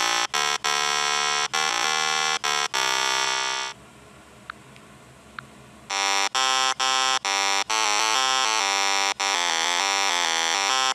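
A buzzy electronic alarm tone sounding in bursts of uneven length with short breaks, stepping up and down between pitches. It stops for about two seconds in the middle, then starts again.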